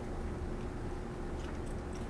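Room tone: a steady low hum with a few faint small clicks near the end.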